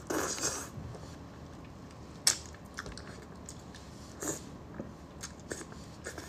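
Close-miked eating of braised fish tail: a noisy bite at the start, then chewing with scattered short mouth clicks, the sharpest about two seconds in.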